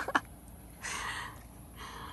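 Two short breathy huffs of air, one about a second in and a fainter one near the end.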